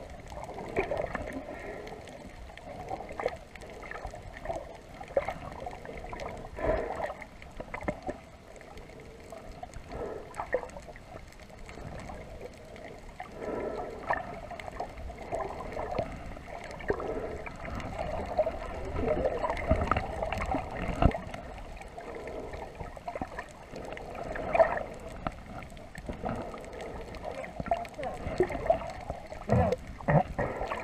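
Muffled underwater noise picked up by a submerged camera while snorkelling: water moving and gurgling, with irregular knocks and clicks throughout.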